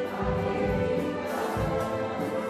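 Orchestra of violins, cello and bassoon playing with a choir singing, held notes over a low beat about once a second.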